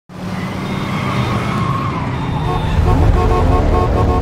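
Car driving, a steady low engine and road rumble that grows louder toward the end. A held steady tone comes in about halfway through.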